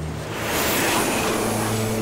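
Animated sound effect of a rushing whoosh that swells about half a second in, over a steady low mechanical hum, as characters ride gliding devices along overhead cables.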